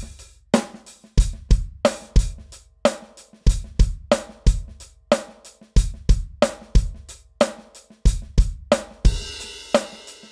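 Electronic drum kit playing a 7/8 groove: kick, snare and a steady hi-hat pattern, with soft ghost notes on the snare filled in by the left hand. A crash cymbal rings out about nine seconds in.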